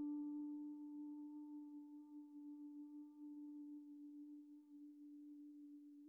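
A woman humming one long, steady note that slowly fades away.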